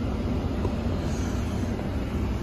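Steady low rumble and hiss inside the cab of a 2019 Ram 1500 Limited pickup, typical of its 5.7-litre Hemi V8 idling in park with the cabin fan running.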